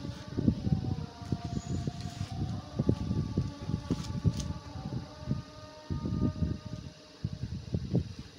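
Handling noise from an embroidered fabric suit being moved about: a run of irregular soft bumps and rustles. A faint drawn-out tone sounds in the background for a few seconds through the middle.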